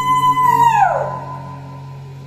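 Group singing with acoustic guitar: a high voice holds one long note, then slides down in pitch and fades about a second in, over low sustained notes that ring on more quietly.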